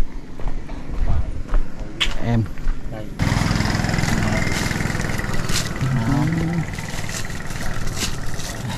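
Brief talk, then from about three seconds in a small engine starts running steadily under the voices, like a nearby motorcycle idling.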